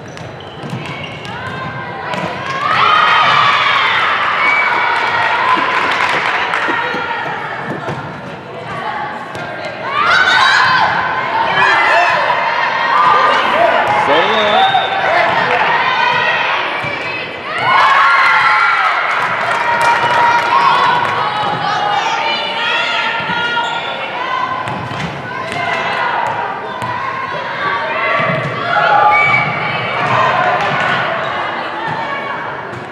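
Youth volleyball rally on a hardwood gym court: the ball is struck and bounces on the floor, with players and spectators repeatedly shouting and cheering in a large echoing hall.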